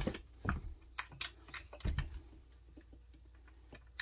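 Irregular small clicks and taps from the parts of a Homelite XL-76 chainsaw's points ignition being handled and fitted, with one sharper knock right at the start.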